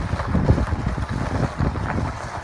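Wind buffeting the microphone in a slowly moving car, an uneven low rumble with the car's road noise beneath it.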